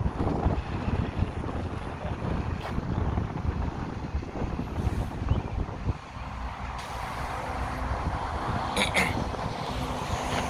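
Wind rumbling on the microphone over road traffic. About six seconds in, the gusty rumble gives way to the steadier hum of a passing vehicle, which slowly grows louder.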